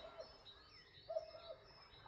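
Faint bird calls: two short low notes about a second apart, with faint high chirps between them.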